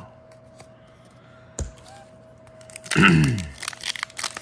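Quiet handling of trading cards with one sharp click about a second and a half in, then a short vocal sound from the person about three seconds in, and the crinkle of a foil booster pack being picked up near the end.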